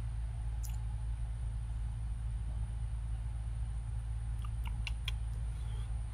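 Steady low background rumble with a faint hiss, and a few faint short clicks about a second in and again near the end.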